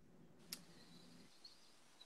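Near silence: faint room tone in a pause between speech, with one faint click about half a second in.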